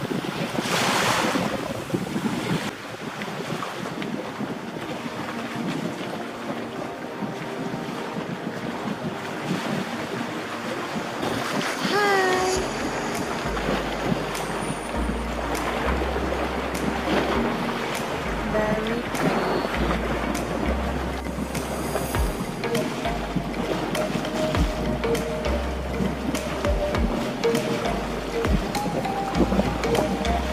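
Small waves washing on a sandy shore, with wind on the microphone. About twelve seconds in, background music with a stepping bass line comes in over the sea sound and carries on.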